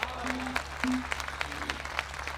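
Audience applauding with scattered, uneven claps after a recited couplet.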